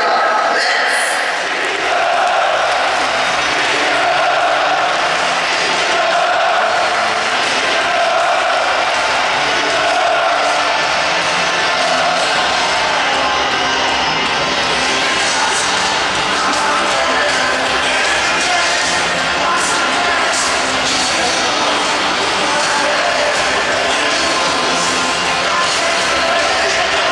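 A large crowd of football supporters singing chants together, continuous and fairly loud throughout.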